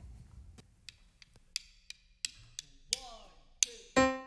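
Faint, evenly spaced ticking, about three clicks a second, typical of a tempo count-in before a band starts a song. A faint voice comes in near the end, and a keyboard chord enters right at the close.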